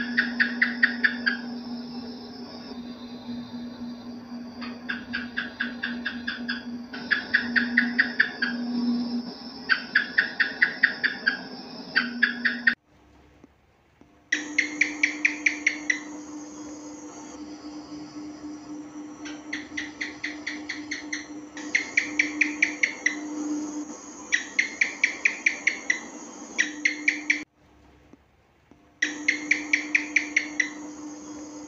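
House geckos (cicak) calling in repeated runs of rapid clicking chirps, about six a second, each run lasting a second or two, over a steady low hum. The sound cuts out briefly twice, about 13 and 28 seconds in.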